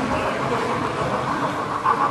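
HO scale model freight train running along the track, a steady rolling noise of its wheels on the rails. There is a brief louder sound near the end.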